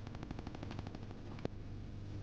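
Faint rapid, evenly spaced clicking over a low hum, fading out about one and a half seconds in with one sharper click.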